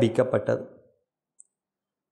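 A man's voice narrating a lesson in Tamil, trailing off about a second in, then silence broken by one faint click.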